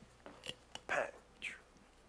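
Faint clicks of a metal cocktail shaker being flipped and caught during a flair shake, with a couple of soft breathy sounds about a second in.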